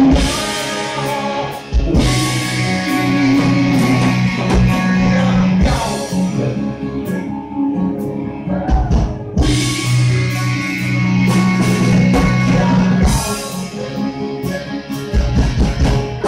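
A hard rock band playing loud and live, with electric guitar, bass guitar and drum kit, recorded from the audience.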